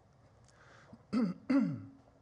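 A man clearing his throat: two short rasps about a second in, the second ending in a voiced sound that falls in pitch.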